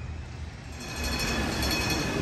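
City traffic on a rain-wet street, getting louder about a second in, with a steady high-pitched whine of several tones over the noise of wheels on the wet road.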